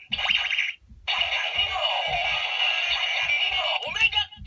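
DX Gan Gun Hand toy's small built-in speaker playing its electronic sound effects and tune after scanning the Nobunaga Ghost Eyecon. A short burst comes first, then a brief break just before the one-second mark, then a longer stretch of music.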